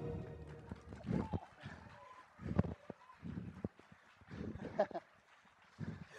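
The musical number's last sound dies away at the start. Then come scattered, irregular thuds and steps of performers moving on the wooden stage floor, with quiet gaps between them.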